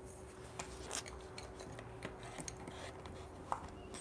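Faint scratching of a colored pencil being worked over paper, with scattered light ticks and a short sharper tap about three and a half seconds in.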